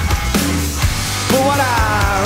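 Rock song performed live: a male lead vocal over drums and bass, the voice dropping out briefly and coming back about a second and a half in with a sliding phrase.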